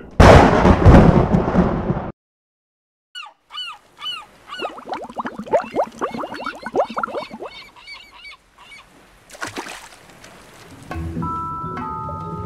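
A loud clap of thunder that cuts off suddenly, then after a short silence a flock of cartoon seagulls crying over and over. Near the end a brief rush of noise, then light music with bell-like notes comes in.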